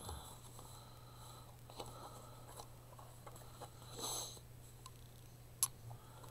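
Faint handling of a small handmade paper booklet, soft rustles and light ticks as its pages are closed and turned, over a low steady hum. There is a brief louder rush of noise about four seconds in and one sharp click near the end.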